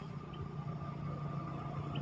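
Steady low hum of an idling vehicle engine.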